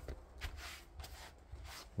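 Soft shuffling footsteps and rustling, a few brief scuffs, as someone steps in through a doorway onto a rug.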